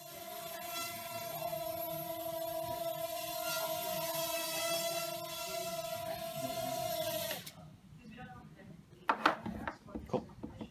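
Small quadcopter's motors and propellers buzzing at a steady pitch in flight, then cutting off suddenly after about seven seconds. A couple of sharp knocks follow near the end.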